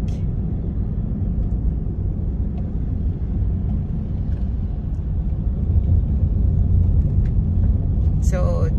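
Steady low rumble of road and engine noise heard from inside a moving car's cabin, growing a little louder about five seconds in.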